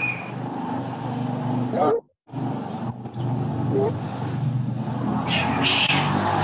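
Steady background noise with a low engine-like hum, carried over an open video-call microphone that cuts in and out abruptly and drops out briefly about two seconds in.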